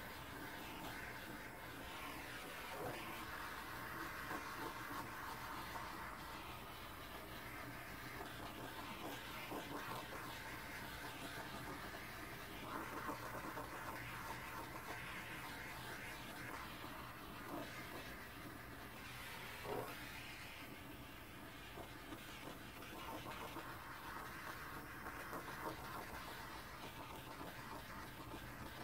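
Small handheld gas torch held over wet poured acrylic paint, its flame making a faint, steady hiss as it warms the paint surface to bring up cells.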